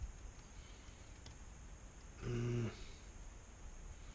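A short, low, steady hum from a voice, about half a second long, a little over two seconds in, over quiet shop room tone, with a faint click before it.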